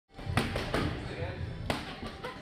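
Boxing gloves striking focus mitts in a pad drill: three sharp smacks, a quick pair followed by a third about a second later.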